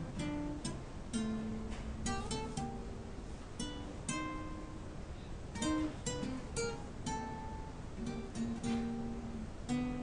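Guitar plucking a simple melody in C, one note at a time, about two notes a second. Each note rings on briefly, and there is a short gap near the middle.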